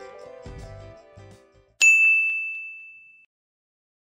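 Music tails off, then a single bright chime rings out once, about two seconds in, with one high ringing tone that fades away over about a second and a half: the end-card logo sting.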